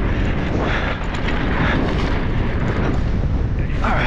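Wind buffeting the microphone on a fast mountain bike descent, a steady low rumble with tyre noise from the hard-packed dirt trail underneath.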